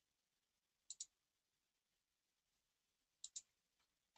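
Two quick pairs of faint computer mouse clicks, about a second in and again near the end, over near silence.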